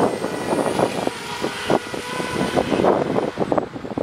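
DJI Spark quadcopter hovering and climbing, its propellers whirring with a thin steady high whine over an irregular rushing noise. The sound cuts off just after the end.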